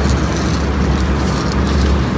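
Steady low rumble with a hiss of background noise, with no distinct event standing out.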